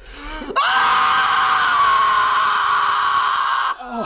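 A person screaming: one long, loud, high-pitched scream held for about three seconds, starting about half a second in and cutting off just before the end.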